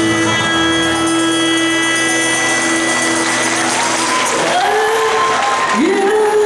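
A live band's closing chord, with acoustic guitar, ringing out and fading, then audience applause rising about three seconds in, with voices calling out over it near the end.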